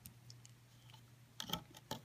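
Faint handling sounds of rubber bands and fingers on a plastic loom: a few soft clicks about one and a half seconds in and another just before the end, over a faint steady hum.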